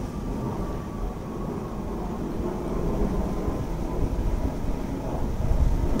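Steady low rumbling background noise, like distant traffic or a running machine, with no distinct individual sounds.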